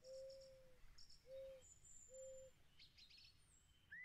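Faint owl hooting: one longer hoot, then two shorter ones about a second apart, with faint high bird chirps.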